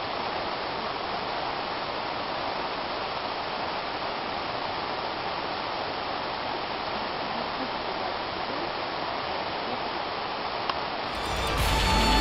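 A steady, even rushing noise with no distinct events. About a second before the end, louder music with a beat comes in.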